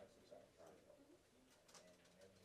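Near silence: a very faint, indistinct low voice murmuring, with a few soft clicks.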